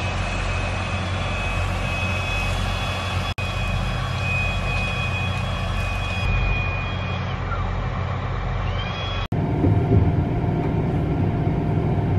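Combine harvester and tractor engines running steadily in a corn field, a constant low machinery drone. A thin high whine runs through the middle stretch. The sound breaks off abruptly twice, and the low rumble is louder after the second break.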